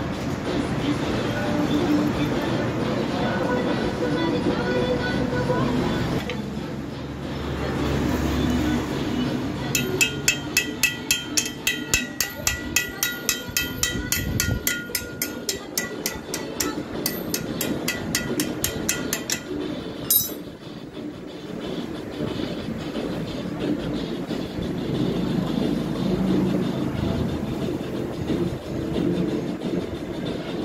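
Metal hand-tool work on a motorcycle engine. In the middle there is a steady run of sharp metallic clicks, about three a second with a ringing tone, lasting about ten seconds, then a single click. Background noise runs underneath.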